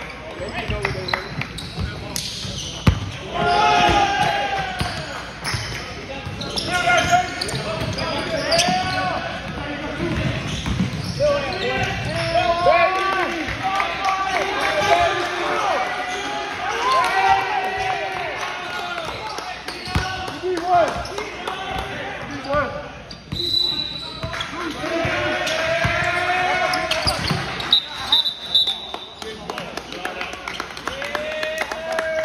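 A basketball game on a hardwood gym floor: a ball bounces amid many players' and spectators' voices that echo in a large hall. Two brief high-pitched tones come in the last third.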